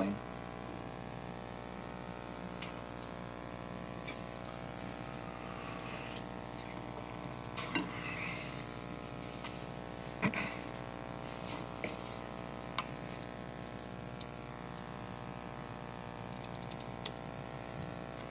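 Quiet room tone: a steady hum with a few faint, scattered clicks and knocks, the most noticeable about eight and ten seconds in.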